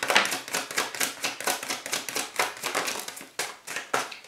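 Tarot cards being shuffled by hand in a rapid run of crisp card flicks, with a few sharper slaps near the end as cards drop onto a wooden desk.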